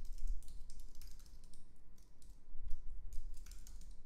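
Typing on a computer keyboard: quick, irregular key clicks.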